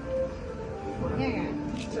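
Voices talking at a dinner table, with music playing in the background.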